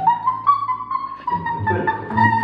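A woman's voice singing one long high note, held about two seconds with a slight upward lift near the start, to 'open' a bottle cap by voice alone.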